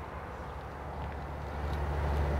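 Low, steady outdoor background rumble with no distinct event, growing slightly louder toward the end.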